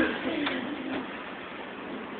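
Quiet film soundtrack from cinema speakers, picked up by a phone: a soft, low sound fading out over the first second, then faint steady hiss.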